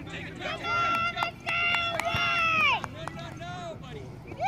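Two loud, drawn-out, high-pitched shouts from people at a soccer field, each held for about a second, during play. A few sharp clicks fall between and after them.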